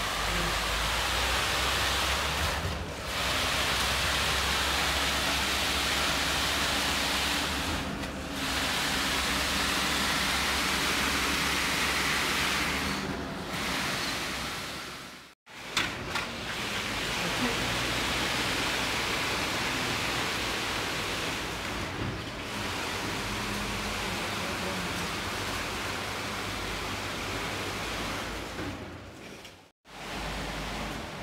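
Steady rushing machine noise from the concrete pour, likely a concrete pump, easing briefly about every five seconds and breaking off suddenly about halfway through.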